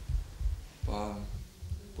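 Irregular deep thumps of a table microphone being bumped, then a short hesitant 'uh' from a man about a second in.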